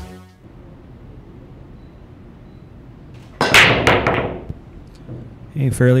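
A really hard pool break about three and a half seconds in: the cue ball cracks into the racked balls, followed by a brief clatter of balls knocking together and scattering across the table.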